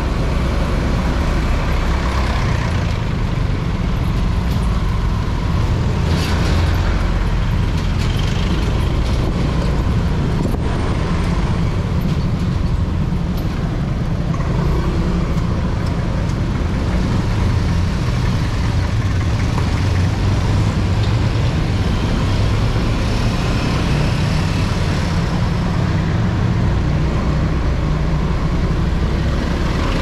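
Steady engine and road noise of a motor scooter riding slowly through city traffic, with other vehicles' engines around it.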